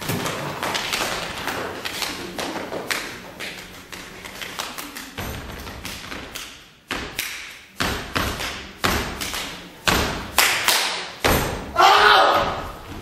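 Body percussion in a contemporary percussion solo: a quick run of sharp slaps and taps, then heavier, deeper thumps about once a second in the second half, each ringing briefly in the hall and growing louder toward the end.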